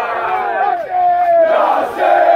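A group of young men chanting a football celebration chant together, loud, with drawn-out shouted notes.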